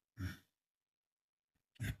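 A man's brief sigh, then quiet until he starts speaking near the end.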